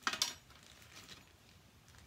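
A brief clatter of craft supplies being picked up and handled on the desk, then faint handling noise.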